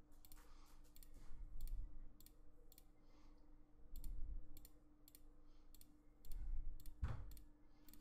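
Computer mouse clicking quietly and irregularly, two or three clicks a second, as a brush is dabbed on in Photoshop. A few soft low thumps come in between.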